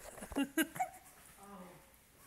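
A puppy whimpering in a few short, high cries in the first second, with a softer cry about a second and a half in. A person laughs over it.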